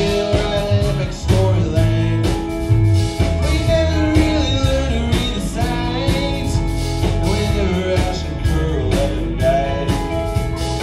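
A rock band playing live: electric guitars, bass, keyboards and a drum kit keeping a steady beat, with a man singing.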